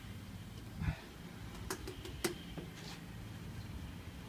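Quiet handling noise from brush-painting a door: a dull knock about a second in, then three or four light, sharp clicks over a faint low hum.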